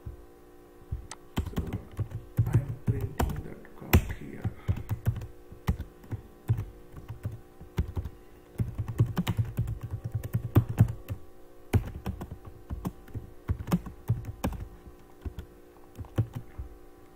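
Typing on a computer keyboard: runs of quick, irregular keystrokes with a few short pauses.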